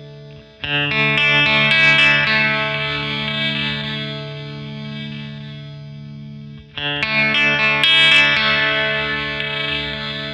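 Electric guitar chord strummed twice, about half a second in and again near seven seconds in, each left ringing out. It plays through the Flamma FS03 delay pedal in its Low-bit mode, a bit-reduced digital delay.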